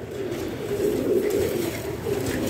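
Domestic pigeon cooing: a low, wavering coo that carries on unbroken for about two seconds.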